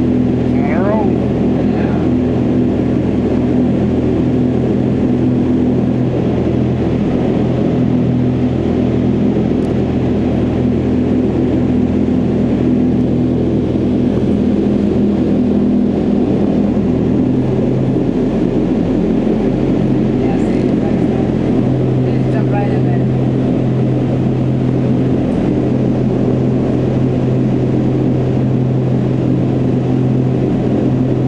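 Indoor skydiving vertical wind tunnel running at flying speed: a loud, steady rush of air with a low, steady hum from its fans.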